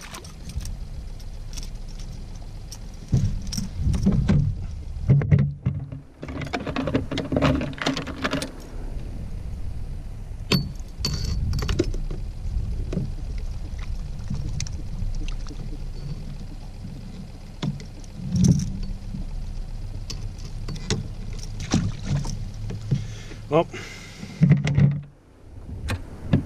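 Knocks, clicks and rattles of fishing gear being handled aboard a fishing kayak, rod and reel knocking against the hull and fittings, over a steady low rumble.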